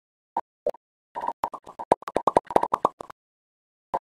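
A string of about twenty short cartoon pop sound effects on an animated title card: two single pops, then a quick run of them, then one last pop near the end.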